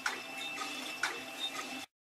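Steady mechanical hum with a thin high whine, and two sharp clicks about a second apart; it cuts off abruptly near the end.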